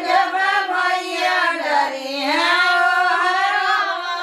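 A group of women singing a traditional folk wedding song (geet) together, unaccompanied, one long wavering melody line held without pause.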